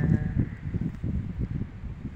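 Wind buffeting a phone's microphone in irregular low gusts.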